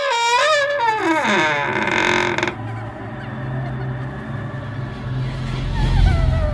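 Horror-style intro sound effects: a wavering tone slides steeply down in pitch over about a second and a half, over a hiss that cuts off abruptly. A low steady drone follows, with a deep boom near the end.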